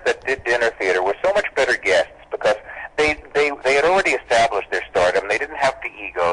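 Only speech: a man talking continuously in a radio interview.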